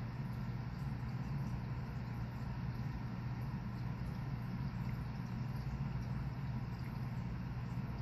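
Steady low hum of running aquarium equipment, with a faint even hiss over it and no distinct events.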